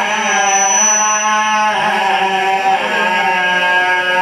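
A man's voice chanting a sung lament in long held notes with slow pitch glides, amplified through a microphone.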